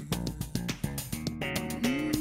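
Instrumental funk band music: bass guitar and guitar playing short, plucked notes, with no singing.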